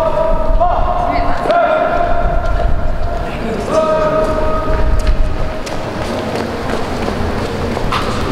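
A high voice holding several long, steady notes without words, each about a second long, with a few sharp knocks among them.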